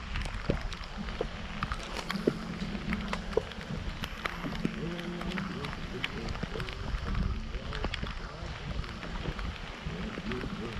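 Low rumbling wind buffeting the microphone, with many scattered sharp ticks and a low murmuring voice.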